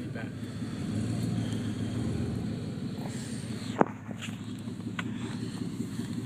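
A truck's engine running, heard from inside the cab as a steady low rumble. A single sharp click comes about four seconds in.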